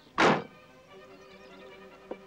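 A car door slammed shut once: a single short, heavy thunk about a quarter second in, with quiet background music under it.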